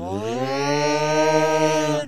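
The alien puppet creature's long, loud held yell: a single open-mouthed "aaah" that swoops up in pitch at the start and is then held steady, dropping away right at the end.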